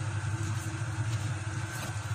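Steady low hum with a soft, even hiss as a thick pork blood stew simmers in a pot and is stirred with a wooden spatula.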